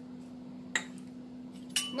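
A steel spoon clinking briefly against a glass mixing bowl, once about three-quarters of a second in and again near the end, over a steady low hum.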